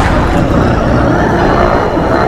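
A loud horror-trailer sound-effect hit on the ghost's jump scare: a sharp impact followed by a sustained rumbling roar.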